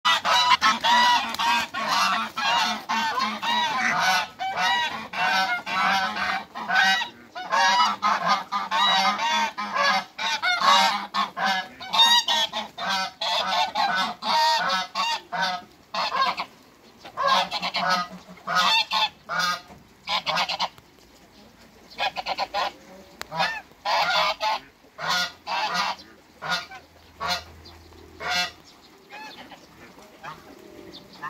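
Egyptian geese honking in rapid, repeated calls, almost continuous for about the first half, then in shorter, spaced-out bouts that die away near the end.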